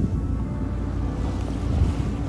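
Wind buffeting the microphone and water washing past the hull of a sailing yacht under way in choppy sea, with a steady low hum underneath and a louder gust near the end.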